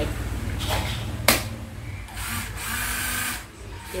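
National cordless drill run briefly with no load, a steady whirr of about a second after a sharp click, as its motor is tried by the trigger.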